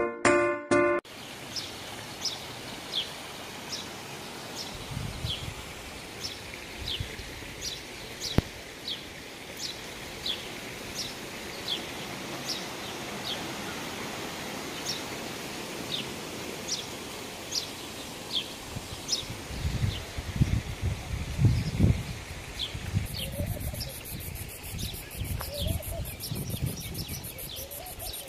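Outdoor ambience in which a bird repeats a short, high, falling chirp about once a second, with bouts of low wind rumble on the microphone. A music jingle ends in the first second.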